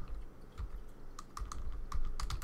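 Computer keyboard being typed on: scattered keystroke clicks, a few at first and then a quicker run of them in the second half.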